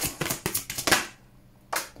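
A deck of oracle cards being shuffled and cut by hand: a quick run of crisp card flicks for about a second, then a single card snapped down near the end.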